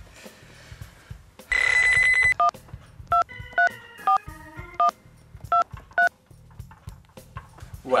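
A mobile phone alarm ringing with an old-style telephone-bell tone in one short burst, then about seven short two-note keypad beeps as buttons are pressed to silence it.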